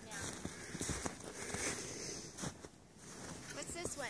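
Footsteps in snow, an uneven series of short steps, with faint voices in the background.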